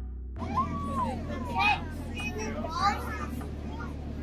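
Young children's voices chattering, high and sliding up and down in pitch. They start about a third of a second in, just after background music fades out.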